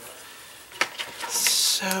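A couple of soft taps from hands handling paper pieces on a cardboard box, in an otherwise quiet stretch, followed near the end by a drawn-out spoken "so".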